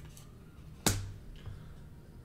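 A single sharp click a little under a second in, from hands handling trading cards at the table, followed by a much fainter tick.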